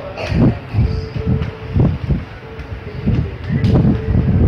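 Background music with a held middle note that comes and goes, over irregular low thuds.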